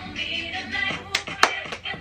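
Upbeat TikTok dance track playing, with a few sharp percussive hits a little over a second in.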